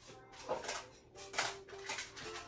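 Quiet handling of glass champagne flutes: a few light taps and clinks, spaced out across the moment.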